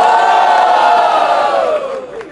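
A crowd's long, drawn-out shouted 'ohhh', many voices together, sliding up at the start, held, then sliding down as it dies away near the end.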